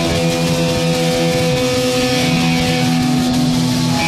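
Hardcore metal-punk recording: distorted electric guitar notes held and ringing out for several seconds, with hardly any drum hits, a sustained break in the song.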